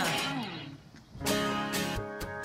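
Background music: one song fades out, then a new song starts about a second in with strummed guitar.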